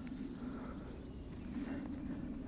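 Quiet outdoor background with a steady low hum.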